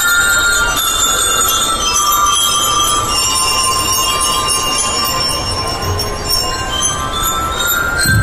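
Bell lyres of a school drum and lyre band playing a ringing melody, many overlapping metallic notes, with little or no drumming under them.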